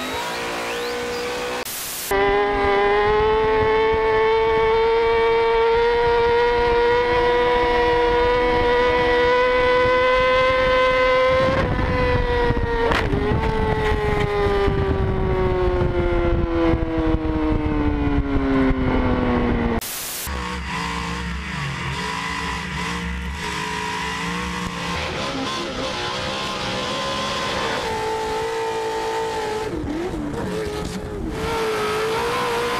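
Engine sounds from successive onboard clips. About two seconds in, a high-revving engine holds a steady, slightly rising note for about ten seconds, then winds down in pitch over the next eight. After a sudden cut near the end of that, a lower, uneven engine sound takes over.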